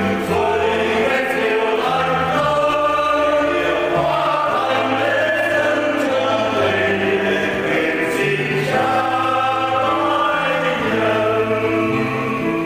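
Choir singing a Vietnamese Catholic offertory hymn in long, held notes over a slowly stepping bass line.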